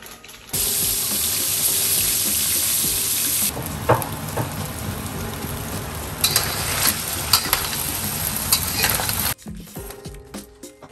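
Crab pieces with ginger and spring onion stir-frying in a hot wok: loud sizzling that starts suddenly about half a second in, with sharp clicks of stirring against the wok every second or so. It cuts off abruptly shortly before the end.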